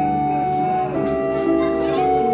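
Background music: a melody of held notes stepping from pitch to pitch over plucked guitar, with voices faintly under it.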